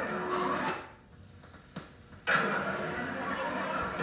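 Voices and background noise on an old videotape recording cut out a little under a second in, with a single click in the gap. The sound then comes back abruptly about a second and a half later, at a cut between recorded scenes.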